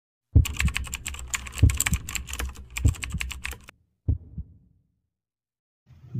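Rapid, irregular clicking like typing on a keyboard, with a few deep thumps underneath. It stops after about three and a half seconds, and one short last burst follows.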